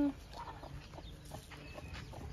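Chickens clucking softly in a farmyard, with the end of a goat kid's bleat cutting off at the very start.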